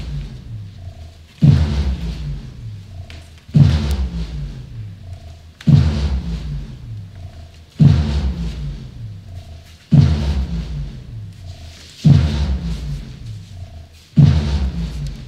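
Theatre sound cue: a deep, low-pitched hit repeating evenly about every two seconds, six times. Each hit drops slightly in pitch as it dies away, and a faint short tone sounds between hits.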